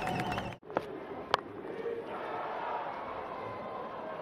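Stadium crowd noise at a T20 cricket match, a steady hubbub that drops out for an instant about half a second in. A little over a second in comes a single sharp crack of bat striking ball.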